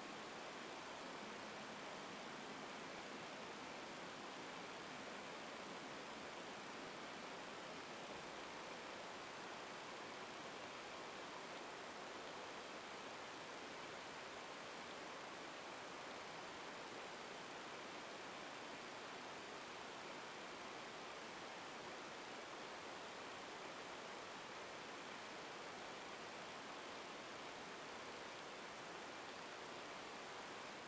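Faint, steady hiss of the recording's background noise (room tone), with no distinct sounds.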